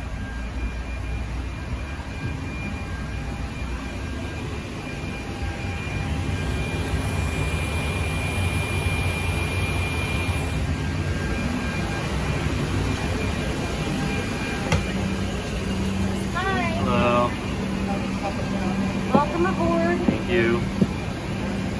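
Steady machinery drone of airport ground equipment and a parked jetliner, heard from inside a jet bridge, with a thin high whine that swells for a few seconds midway. Short bursts of voices near the end.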